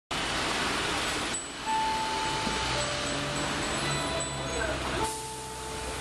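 City bus idling behind the stop: a steady low engine hum sets in about three seconds in, over street noise. A few held electronic tones sound one after another.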